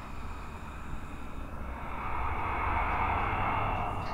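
Electronic noise music from a synthesizer and mixer setup. A rushing band of noise swells up over the second half and cuts off suddenly at the end, over a steady low rumble and a few faint steady high tones.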